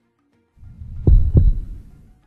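A short low-pitched sound sting for an animated corporate logo: a deep swell rises after half a second of silence, peaks in two deep thumps about a third of a second apart, and fades away.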